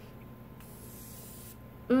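Continuous setting mist sprayed from a pressurized can: a faint, fine hiss lasting about a second, starting about half a second in.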